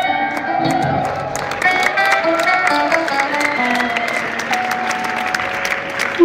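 Live band playing an instrumental passage, with guitar lines over drums and the noise of a crowd.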